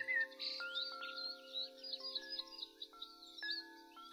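Faint, soft background music of held tones with chime-like notes coming in one after another, and small birds chirping over it.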